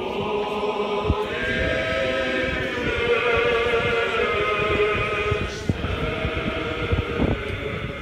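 Orthodox choir chanting the panikhida (memorial service) a cappella, in long held notes that move to a new pitch every second or two, with a short break a little past halfway.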